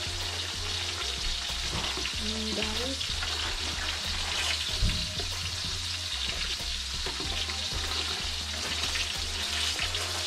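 A spoon stirring a thick, creamy soup in a large stainless-steel stock pot as it simmers, just after corn flour has gone in to thicken it, over a steady hiss and a low hum. One dull knock about halfway through is the loudest sound.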